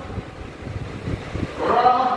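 A pause in a man's sermon over the mosque loudspeakers, filled by low rumbling noise. His amplified voice resumes about a second and a half in.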